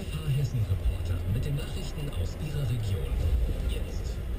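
Car radio playing inside a car cabin: a man's voice over music, with the car's low engine and road rumble underneath.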